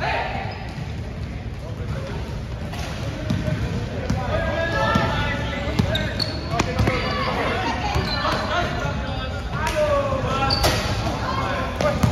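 A basketball being dribbled on a hard gym floor, bouncing repeatedly, over players and spectators calling out and talking.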